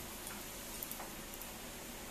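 A few faint light clicks and soft rustles of a Gadwal silk saree being handled and opened out, over steady room hiss.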